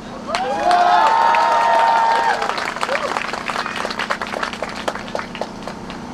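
Crowd applauding, with one voice giving a long held shout in the first two seconds, before the clapping carries on on its own.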